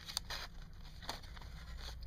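Plastic blister packs and parts bags handled by hand, giving a few light crinkles and clicks over a steady low hum.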